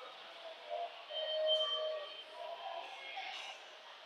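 Train station concourse ambience: faint music-like held tones, loudest about a second in, over a steady background hum with distant voices and a few light ticks.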